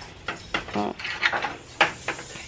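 A woman briefly says "oh" amid a few short clicks and knocks.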